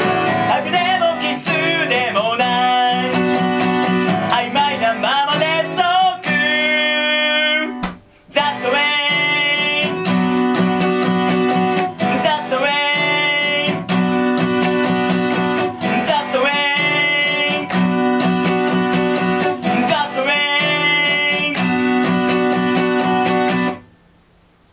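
Acoustic guitar strummed in steady chords while a man sings the song's closing lines over it. The playing breaks off for a moment about eight seconds in, and the music stops suddenly at the end.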